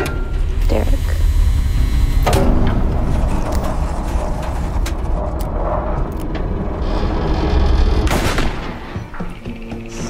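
Harsh trailer sound design: a loud, dense low rumble under grinding noise, struck by sharp booming hits near the start, about two seconds in and about eight seconds in, then thinning out near the end.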